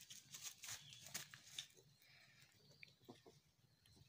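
Faint rustling and crackling in grass and clover as a hand holds a baby rabbit in it, with scattered small clicks and a couple of short high blips.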